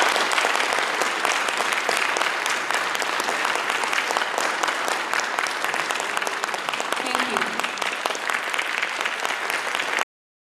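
Audience applauding: dense, steady clapping from many hands.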